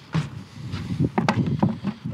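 Footsteps scuffing on paving slabs and knocks from a plastic traffic cone being carried and set down: one sharp knock just after the start, then a quick run of short knocks and scuffs in the second half.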